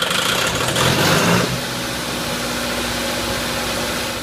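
Kubota multi-cylinder engine just after starting, running unsteadily at raised speed for about a second and a half, then settling to a steady idle.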